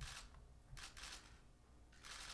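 A few faint camera shutter clicks, two of them close together about a second in.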